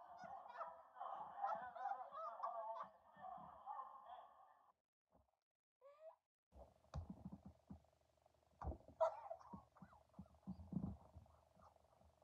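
Shrill, honking laughter heard through the narrow, tinny sound of a played-back stream clip, breaking off about five seconds in. After a short gap come quieter laughter and low bumps picked up by a closer microphone.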